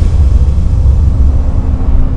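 Loud, deep, steady rumble of a cinematic logo sting's sound design, with a faint hum tone joining about halfway through.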